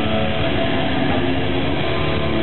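A rock band playing loud, heavy, distorted live music, dense and steady in volume, with a strong low end.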